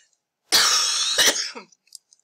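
A person coughing: a loud, harsh cough about half a second in, with a second hack right after, lasting about a second in all.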